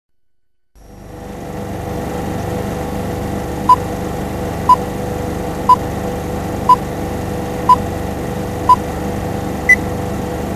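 Film-leader countdown beeps: six short tones a second apart, then a last, higher beep, over a steady hiss and hum of old film sound.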